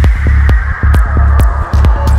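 Dark progressive psytrance: a steady kick drum a little over twice a second with a rolling bassline filling the gaps between kicks, and a noisy synth layer and short high percussion hits above.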